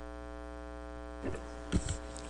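Steady electrical mains hum with a stack of even overtones, as picked up through a meeting's microphone and recording system, with a brief low thump near the end.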